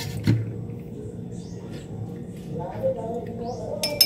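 Someone tasting freshly blended kiwi juice: a light clink just after the start, soft small mouth and handling sounds, and a brief murmured voice near the end that breaks into a laugh at the juice's sourness.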